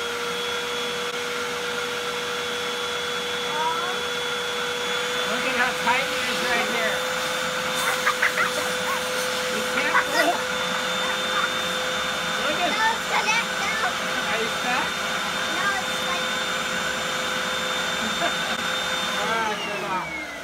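Vacuum cleaner running steadily with a high whine, sucking the air out of a large plastic trash bag through its hose; it is switched off near the end and winds down.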